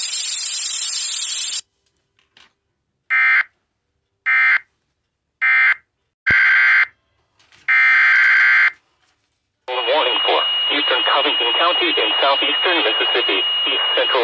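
Emergency Alert System data bursts played through an internet radio stream: five short, loud electronic screeches of differing length after a pause, the last about a second long. About ten seconds in, a voice begins reading a severe thunderstorm warning.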